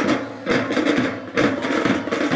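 School marching drum band's snare and bass drums playing, with a few loud strokes about half a second to a second apart over a steady rumble of drumming.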